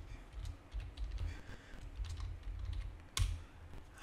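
Typing on a computer keyboard: a run of light keystrokes, with one sharper, louder click a little past three seconds in.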